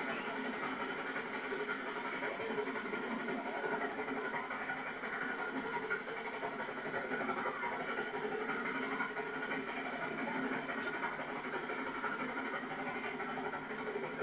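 Distant train noise in a railway cutting, a steady rumble and hiss on an old video recording.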